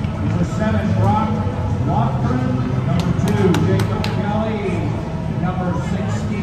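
Spectators chattering in the stands, many voices overlapping with no single clear speaker. About halfway through come about five quick, sharp taps in a row.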